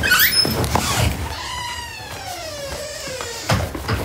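A door creaking open: a short squeak, then one long squeal falling steadily in pitch, followed by a thud near the end.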